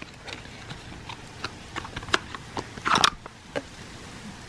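Small clicks and taps of a cardboard product box and a plastic lotion tube being handled, with one louder brief rustle about three seconds in as the tube comes out of its box.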